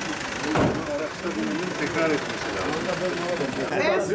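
People talking over the steady idle of a Mercedes-Benz Sprinter minibus engine, with one sharp thump about half a second in.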